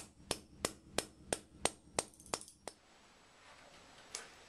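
Claw hammer driving a resilient ceiling mount up into a pre-drilled hole in a concrete slab: sharp, even strikes about three a second, then a few lighter, quicker taps that stop under three seconds in.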